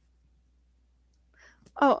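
Near silence, then a short intake of breath and a woman's voice saying "Oh" near the end.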